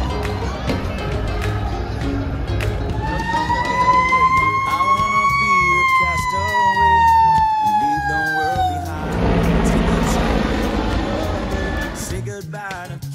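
Fire truck siren sounding one long wail. It starts about three seconds in, climbs slowly for a couple of seconds, then falls away over about three more, with crowd and street noise underneath.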